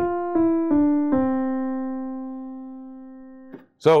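Piano played one note at a time: four notes stepping down, the last a C that is held and slowly dies away for over two seconds before it is released.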